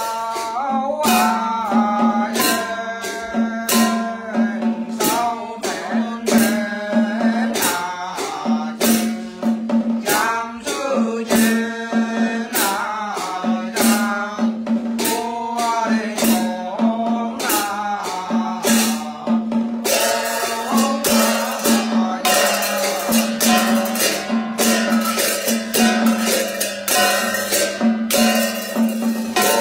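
Ritual chanting by a male voice over hand cymbals clashed in a steady beat of about two strikes a second. About two-thirds of the way through, the cymbal playing turns faster and denser.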